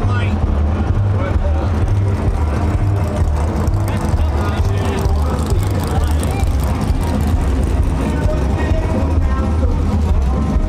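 Gen V LT V8 engine in a swapped Mazda RX2 idling with a steady low rumble, heard from inside the car's cabin.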